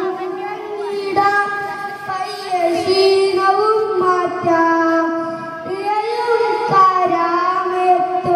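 A young boy singing solo into a microphone, holding long notes that bend smoothly from one pitch to the next.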